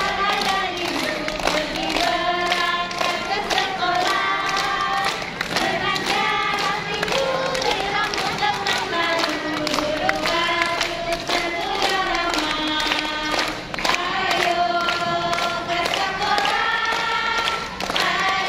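A large group of schoolchildren singing a song together in unison.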